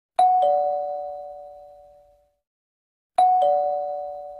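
Two-tone ding-dong chime like a doorbell: a higher note, then a lower one a quarter second later, both ringing out and fading over about two seconds. The ding-dong comes again about three seconds in.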